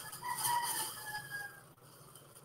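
A faint bird call, drawn out for about a second and falling slightly in pitch, fading out before the end.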